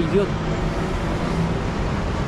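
Road traffic at a wide junction: a steady rush of passing vehicles with a faint low engine hum from a container truck crossing.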